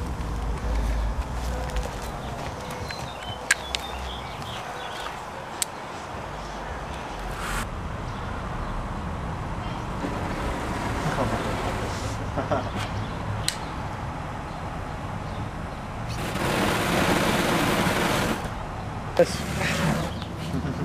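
Homemade wrist-mounted flamethrower firing: canned fuel, released by a servo pressing the can's nozzle, sprayed past a barbecue-lighter flame, giving a hissing rush of burning spray that lasts about two seconds near the end. A few sharp clicks come earlier.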